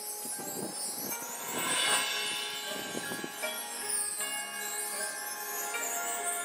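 A marching band's front ensemble plays a soft opening of sustained chords on keyboard mallet percussion, with bell and chime shimmer over them. A high shimmering swell peaks about two seconds in.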